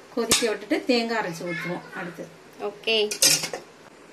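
A metal ladle scraping and clanking against a stainless steel pot while stirring thick mutton curry, with a sharp clank about a third of a second in.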